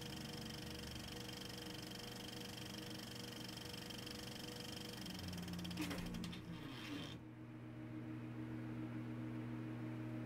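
Faint steady electrical hum with a few high whining tones. About six seconds in comes a brief crackling, falling sweep, after which the high tones stop and only the low hum remains.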